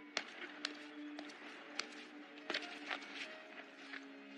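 Footsteps of hard-soled shoes on stone steps, a handful of sharp, uneven steps, over soft, sustained background music.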